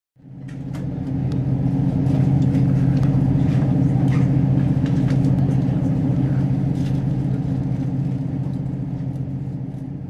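A low, steady rumbling drone that fades in over the first couple of seconds and holds, with faint scattered clicks above it.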